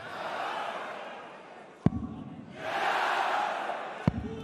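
Steel-tip dart striking a bristle dartboard with a single sharp thud about two seconds in, over an arena crowd. The crowd noise then swells over the last second and a half as the darts pile into the treble 20 toward a 180 maximum.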